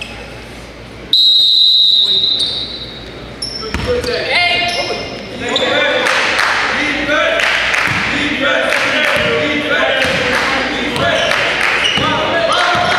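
A referee's whistle blows one long blast about a second in, the loudest sound here. Then a basketball is dribbled on the hardwood court while players and spectators call out.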